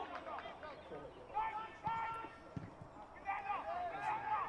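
Faint shouting voices of players and spectators across a football pitch, in short calls, with a single dull thud about two and a half seconds in.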